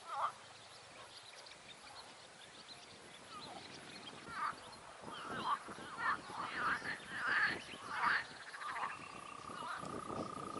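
Frogs calling from a pond: a few seconds of quiet, then a run of short, repeated croaking calls from about four seconds in. A thin steady high tone joins near the end.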